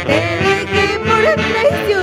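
Andean folk band playing live, with saxophones over pounding bass drums and a high voice singing.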